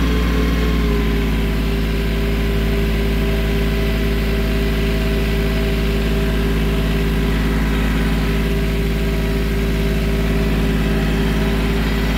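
Compact loader tractor's diesel engine running steadily at raised throttle, its pitch holding level throughout.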